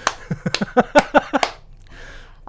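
Laughter with several quick, sharp hand claps over the first second and a half, then a short lull.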